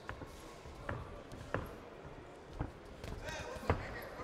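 Boxing gloves thudding as punches land, five irregular blows, the loudest near the end as the boxers close in, with voices shouting around them.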